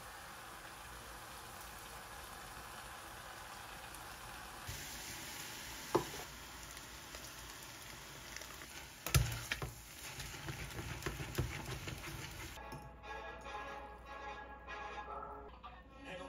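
Pork slices and bean sprouts sizzling in a small saucepan, with a sharp clink about six seconds in and a louder knock and clatter of utensils around nine seconds. Background music comes in near the end.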